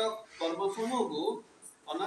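Only speech: a man reading aloud from a book, with a brief pause about a second and a half in.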